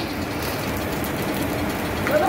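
Eggs frying on a flat-top griddle: a steady sizzle over a low, even running hum.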